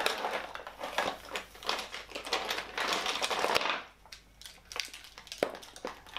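Hands raking and scooping through a big pile of makeup products: tubes, compacts, palettes and packaging clattering and rustling against one another. The sound is dense for about three and a half seconds, then thins to a few scattered clicks.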